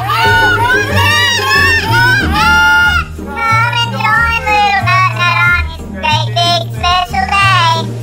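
Music: a novelty song with a high-pitched, gliding melody line over a bass line that steps between held notes about once a second.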